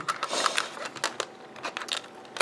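Plastic CD jewel case being handled: a series of small clicks and rattles of the hinged plastic lid and case, with light rustling.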